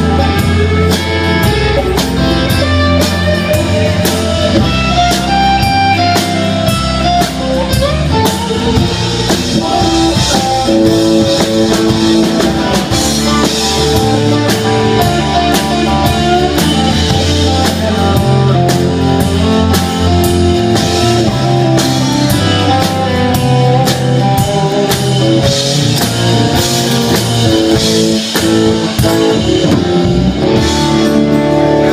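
A live country-rock band playing an instrumental stretch: acoustic and electric guitars, bass and a drum kit, with a melodic guitar line moving over a steady beat and no singing.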